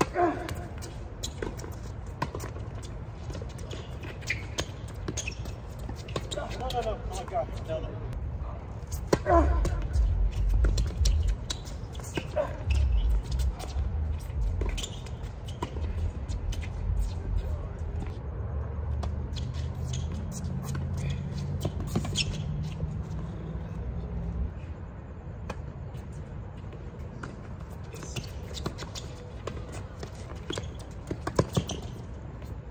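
Tennis doubles rally: rackets striking the ball in sharp pops, starting with a serve, the ball bouncing on the hard court and shoes scuffing between shots, over a low rumble.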